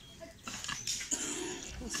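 Wet scraping and cutting of fish against a boti blade, with irregular clicks starting about half a second in. A short vocal sound is heard in the background around the middle.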